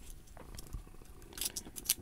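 Faint handling noise of hands brushing over a wrist and a metal mesh watch band, with a few light scratchy brushes in the second half.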